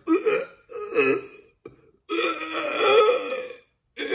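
A man imitating retching with his voice: three gagging heaves, two short ones and then a longer one, acting out dry heaving on an empty stomach.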